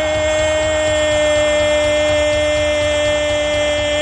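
Radio commentator's long held 'gol' shout after a goal, one unbroken steady note, with crowd noise beneath.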